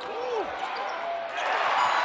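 Basketball game sound: a ball dribbled on a hardwood court, with crowd noise swelling in the second half.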